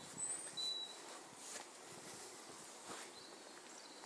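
Faint outdoor background with a few short, high bird chirps, the loudest about half a second in, and some soft clicks and rustles.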